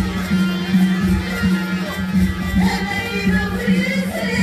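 Music with plucked strings over a steady low beat and a held bass note; a singing voice comes in near the end.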